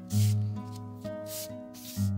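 A hand rubbing across a sheet of textured watercolour paper: three short, dry brushing strokes. Soft music with plucked guitar notes plays underneath.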